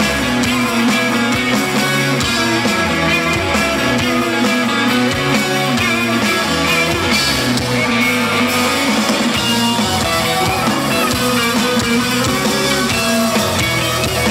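Indie rock band playing live on stage: guitar over a steady drum kit beat, loud and continuous.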